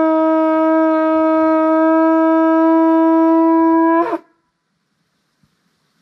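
Conch shell trumpet blown in one long, very loud, steady note, held for about four seconds before a brief dip in pitch and an abrupt cut-off.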